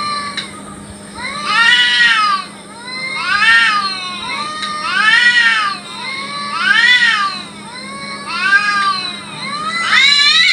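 Domestic cats yowling in a territorial standoff before a fight: long, drawn-out wails that rise and fall in pitch, about one every second and a half.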